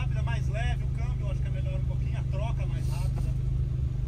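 Volkswagen Jetta driving, heard from inside the cabin as a steady low drone of engine and road noise, with faint voices over it.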